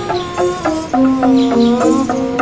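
Angklung playing a melody: shaken bamboo tubes keep each note going as a fast rattling tremolo, with the notes stepping down about a second in.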